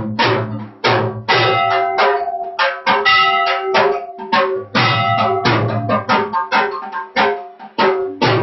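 Loud devotional aarti music: drums struck in an uneven, driving rhythm of roughly two beats a second, with ringing sustained tones carrying between the strikes.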